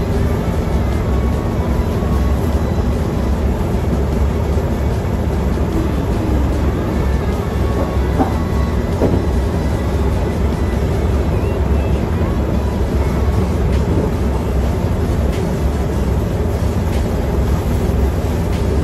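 Steady low mechanical rumble, even in level throughout.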